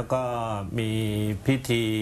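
Only speech: a man speaking Thai, his syllables drawn out into long, level tones.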